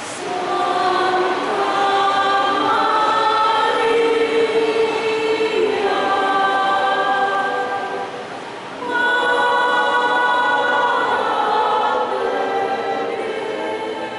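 Women's choir singing a hymn to Mary in long held notes, pausing briefly about eight seconds in before the next phrase begins.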